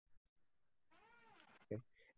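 Near silence, broken about a second in by one faint drawn-out call that rises and then falls in pitch.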